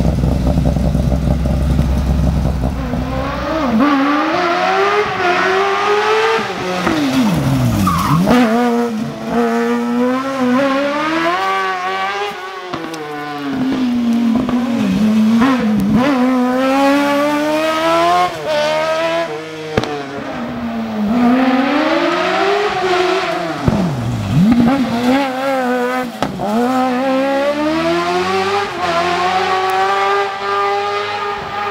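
Modified Fiat 500 race car driven hard, its engine revving high and rising and falling again and again as it shifts and brakes through the turns, with two sharp drops in pitch about eight seconds in and near twenty-four seconds. A deeper rumble fills the first few seconds before the high revving takes over.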